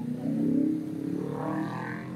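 A passing motor vehicle's engine accelerating, its pitch rising steadily through the gears' run, over steady street traffic.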